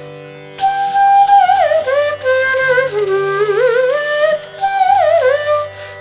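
Chitravenu slide flute playing a Carnatic phrase, entering about half a second in, with long held notes joined by slides and wavering gamaka ornaments. A steady low drone sounds underneath.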